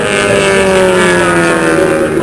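Short-track stock car engine running at low speed, its pitch falling slowly as the car rolls past.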